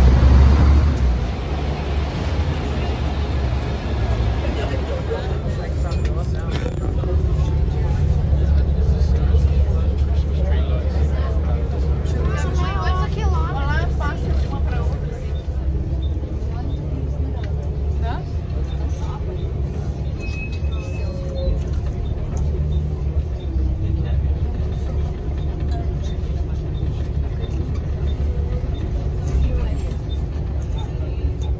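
Steady low rumble of a double-decker sightseeing bus riding through city traffic, with indistinct voices.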